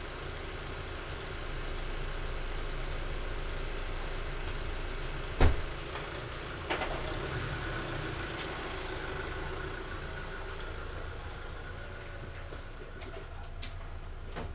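A steady low background rumble with one sharp knock about five and a half seconds in, followed by a smaller click and a few faint taps.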